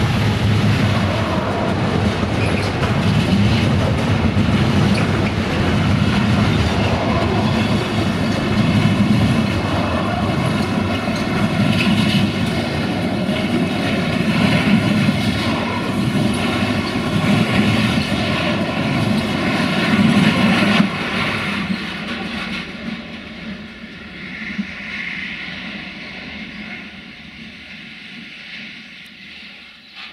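Container freight wagons rolling past close by, steel wheels running on the rails in a steady loud rumble. After about twenty seconds the sound fades away as the end of the train moves off.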